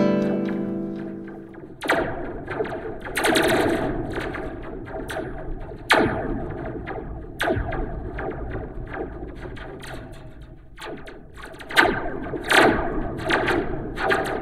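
Acoustic guitar notes played through a Slinky toy spring stretched from the guitar body, which acts as a homemade spring reverb: a ringing note dies away at the start, then a series of separate plucks or taps each trail off in an echoing, spacey laser-like reverb.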